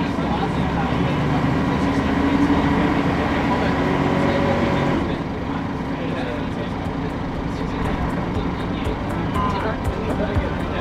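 Diesel city bus engine running under way, its low note strong at first and easing off about halfway through as the bus slows or lifts off the throttle. Passengers chat indistinctly in the background.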